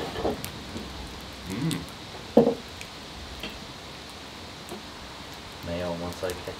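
A few short murmured voice sounds in the first couple of seconds, the loudest about two and a half seconds in, over a steady outdoor hiss with scattered faint ticks. A voice returns near the end.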